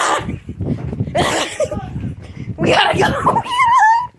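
Excited children's voices in bursts of squealing and laughing-like cries, high and wavering, the loudest near the end.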